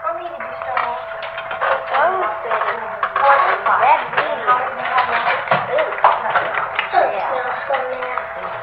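Indistinct chatter of several children's voices, with small taps and knocks, over a steady hum.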